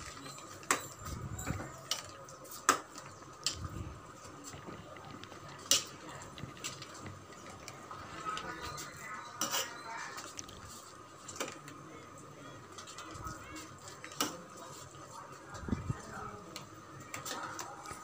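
Metal ladle scraping and knocking against a stainless steel pot while thick sweet pongal is stirred, light irregular clinks every second or two.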